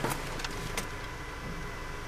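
Steady low noise of a car's cabin with the engine running, with a faint click or two.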